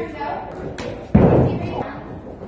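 A heavy thud about a second in, with a short echo in a large hall: a person landing hard on the padded floor during a stunt move.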